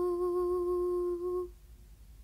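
A woman's singing voice holding the final note of a traditional Irish song, steady in pitch. It stops about one and a half seconds in, leaving faint hiss.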